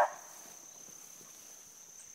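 Faint, steady high-pitched insect drone from crickets in the brush, with no other sound standing out.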